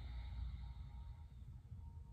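A woman's slow, breathy exhale that fades out about a second in, over a low steady room hum.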